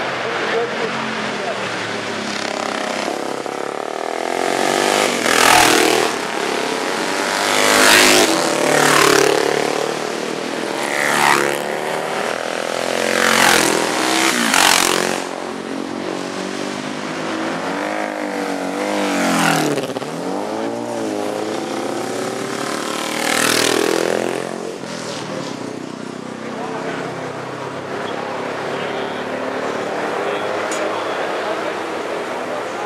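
Classic racing engines passing one after another, about eight machines in all, each rising loud and dropping in pitch as it goes by. The passes come in a busy run in the first half and are spaced out after that.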